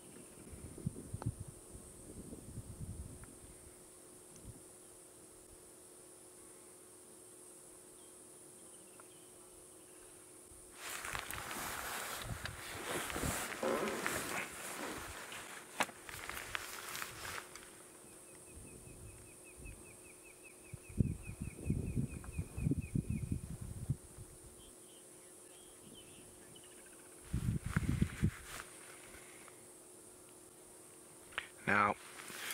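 Steady drone of night insects, broken by several bouts of rustling noise, the longest a few seconds before the middle, and a dry pulsing trill lasting about five seconds just after the middle.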